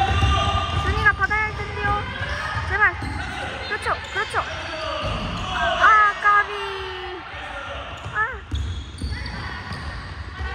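Basketball game on a hardwood gym floor: sneakers squeak sharply again and again as players sprint and cut, with a basketball dribbling on the floor.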